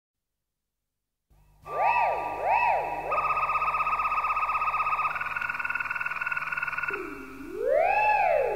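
Opening of an electronic synth-pop record from 1979: after a moment of silence, synthesizer tones sweep up and down like a siren twice, then settle into a fast-pulsing held tone that steps up in pitch. Slower up-and-down siren-like sweeps return near the end.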